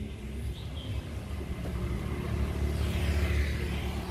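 Street traffic with a steady low rumble, and a motorbike passing close, louder about three seconds in.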